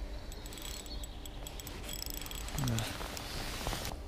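Shimano Soare CI4 2000 spinning reel being cranked to wind in the line, its gears and rotor giving a run of small, quick clicks and ticks. About two and a half seconds in there is a short low vocal sound falling in pitch, and wind rumbles on the microphone.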